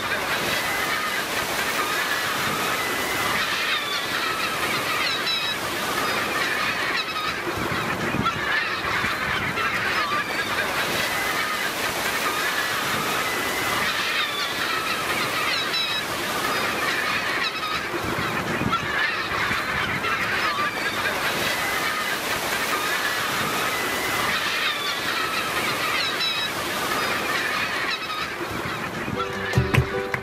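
A dense chorus of many seabirds calling at once, short cries overlapping without a break, over a faint wash of surf.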